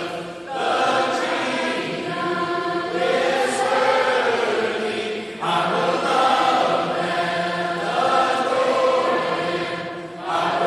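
A large crowd of voices singing a worship song together, men and women in separate parts. Held sung phrases, with brief breaks about half a second in and again about five and a half seconds in.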